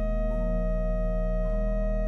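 Sampled pipe organ (Hauptwerk's Trost organ of Waltershausen) playing a held chord over a deep sustained pedal note, the inner notes changing twice.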